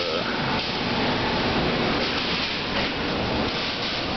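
Steady, fairly loud rushing noise with an irregular low rustle: shop background noise mixed with handling noise from a handheld camera.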